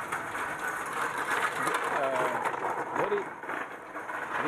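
Voices of passersby talking in a stone-paved street, with a rattling clatter in the first half from a hand trolley's wheels rolling over the paving.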